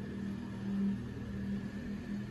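A steady low hum with faint room noise, in a pause between sung phrases.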